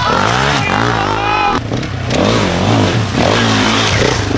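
Off-road enduro motorcycle engine revved hard in quick repeated surges, the pitch rising and falling as the throttle is worked on a steep climb. The sound changes about a second and a half in, to another bike revving in shorter bursts.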